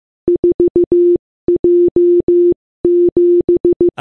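Morse code sent very fast as beeps on one steady pitch, in long and short tones with brief pauses between letters. It sends the digits 4, 1, 7: dot-dot-dot-dot-dash, dot-dash-dash-dash-dash, dash-dash-dot-dot-dot.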